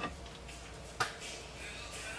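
A single sharp tap about a second in, a wooden board knocking against the wooden window framing as it is handled, over quiet room tone.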